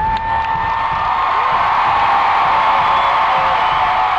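Arena concert crowd cheering and screaming, with one shrill scream close by that slides up at the start and is then held at a steady pitch through the rest.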